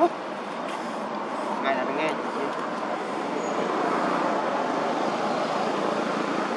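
Steady outdoor background din with indistinct voices, and a couple of short chirps about two seconds in.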